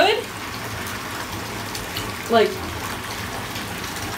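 Bathtub tap running into a filling tub: a steady rush of water.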